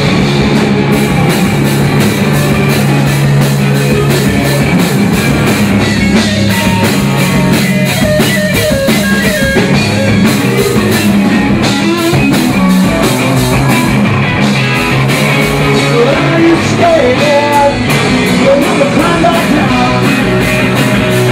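Live rock played by a guitar-and-drums duo: a Squier Telecaster electric guitar through a Marshall amp over a drum kit keeping a steady beat.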